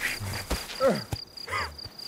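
Crickets chirping in a steady, evenly pulsed rhythm. Over it come a man's short strained groans, twice, and a few scuffs and knocks on stony ground.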